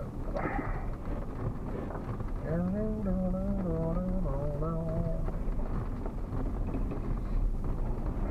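Steady engine and road noise from a truck rolling slowly over a rough dirt driveway. A bit over two seconds in, a low voice hums or sings a few held notes of a tune for about three seconds.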